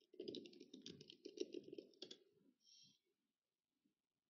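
Typing on a computer keyboard: a quick, faint run of key clicks for about two seconds, ending with one sharper keystroke as Enter is pressed, then a brief faint rustle just before three seconds in.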